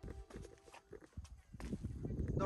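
Faint footsteps on stone blocks: a few soft, irregular knocks over a low rumble.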